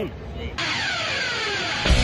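Intro sound effect for a channel logo: about half a second in, a noisy sweep with falling pitches starts suddenly. Near the end, loud rock music with a heavy beat kicks in.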